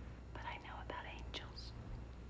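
A woman whispering a few words, over a faint steady low hum.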